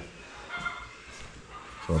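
A dog whimpering faintly, a couple of short high whines, in a lull between speech.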